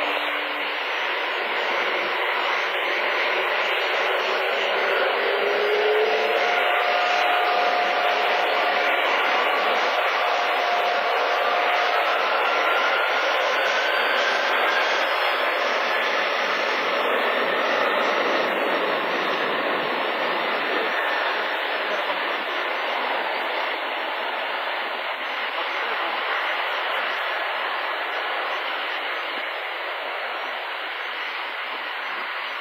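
Twin-engine jet airliner's engines spooling up to takeoff power as it rolls down the runway: a loud steady rush with a rising whine in the first half, easing slightly near the end as the aircraft draws away.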